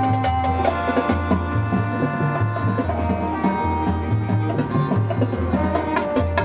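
Marching band playing its field show: percussion strokes over sustained pitched parts and a bass line that steps between notes.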